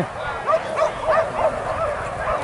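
Hunting dogs yelping, short high arched yips two or three times a second, several dogs overlapping.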